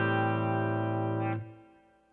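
Electric guitar with humbucker pickups letting an A minor 7 chord ring, then muted about a second and a half in, after which it falls silent.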